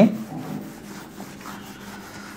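Quiet rubbing against a surface over a low, steady hum, just after a man's voice stops.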